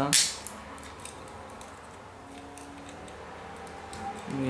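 Faint, scattered light clicks and small knocks of a small transforming robot toy's plastic parts being turned and snapped into place by hand.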